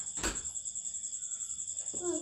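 A cricket chirping in a steady, rapidly pulsing high trill, with one short click shortly after the start.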